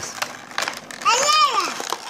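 A young child's high-pitched voice, one call rising then falling about a second in, over the crinkling and clicking of a plastic Play-Doh package being pulled open by hand.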